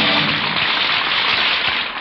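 Studio audience applauding as a short orchestral music bridge dies away in the first half second. The applause is a steady clatter of many hands that thins a little toward the end, heard on a narrow-band 1940s radio broadcast recording.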